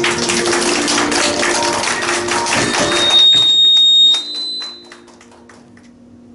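A congregation applauding: loud, dense hand-clapping that dies away about four seconds in, over a held musical note.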